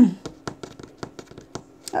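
A throat clear, then a string of light clicks and taps from ink swatch cards being handled and set down on a wooden tabletop.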